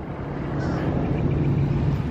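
A low, steady motor hum, growing gradually louder.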